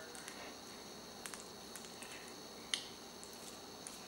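Hot frying oil in a cast-iron pot crackling faintly, with a few light ticks and one sharper pop about two-thirds of the way through.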